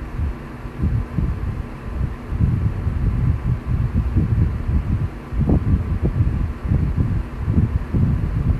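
Irregular low rumbling and thumping, like wind or handling noise on a microphone, over a faint steady hum.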